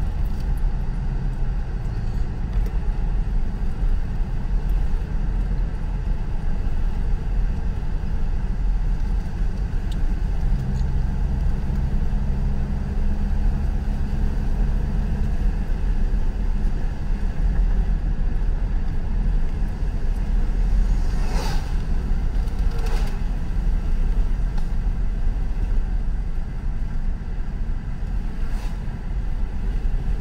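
Car driving, heard from inside the cabin: a steady low road and engine rumble. A low steady tone joins for a few seconds near the middle, and two short knocks come a second or so apart about two-thirds of the way through.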